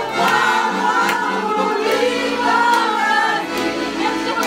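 A group of women singing a song together, with hand-clapping on the beat, roughly one clap every 0.8 seconds.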